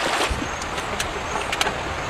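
Shallow stream water running over rocks, a steady rushing noise, with a few short sharp clicks or splashes about one and one and a half seconds in.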